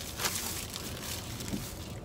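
A few soft clicks and rustles of food packaging being handled, over a steady low hum in a car's cabin.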